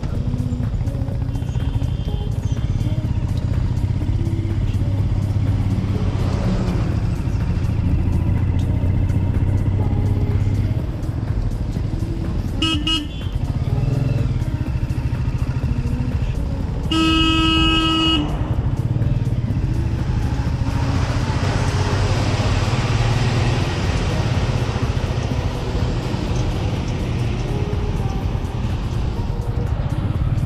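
Motorcycle engine running steadily under way, heard from the rider's position, with wind rushing on the microphone. A vehicle horn toots briefly a little before halfway, then sounds again, louder, for about a second just past halfway.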